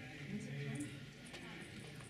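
A woman singing a Cree song unaccompanied, faint, with a held note early on that fades and then resumes near the end.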